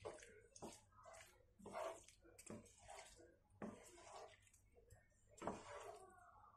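Wooden spatula stirring and tossing creamy fusilli pasta in a frying pan: a run of faint, irregular scraping strokes, several a second or so apart.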